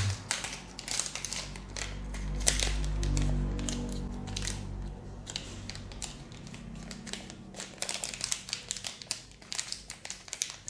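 Metallised plastic zip-lock bag crinkling as it is handled and pulled open, a quick run of crackles.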